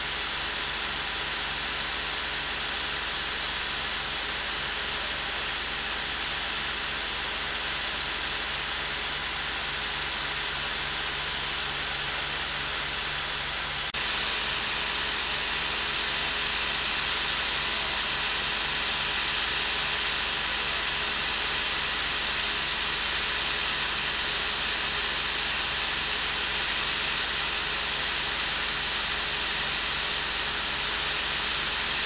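Steady rushing hiss of water pouring through the large wooden mine-pump water wheel (konsthjul) as it turns at full speed. The level steps up slightly about halfway through.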